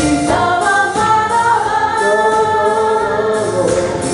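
Mixed-voice a cappella group singing through hand-held microphones, several voices holding chords in close harmony.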